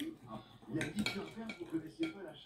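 A few sharp clinks of tableware against plates during a meal, the sharpest about a second in, with voices talking in the background.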